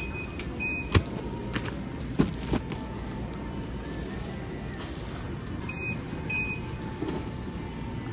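Shopping cart rolling over a concrete store floor amid a steady hum of store background noise, with a sharp knock about a second in and two pairs of short high beeps.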